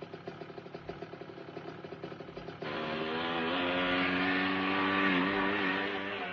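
Motorcycle engine idling with an even pulse, then about two and a half seconds in it gets suddenly louder as the bike pulls away, its note rising briefly and then holding steady before it begins to fade as the motorcycle rides off.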